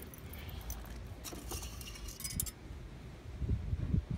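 Metal engine-oil dipstick rattling and clinking in its tube as it is pulled out, in a short cluster of light metallic clinks between about one and two and a half seconds in, over a low rumble.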